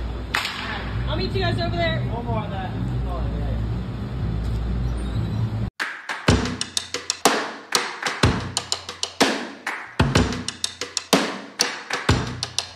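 A baseball bat cracks against a ball once, just after the start, over the steady noise of an indoor batting cage. About halfway through, the sound cuts abruptly to background music with a steady drum beat.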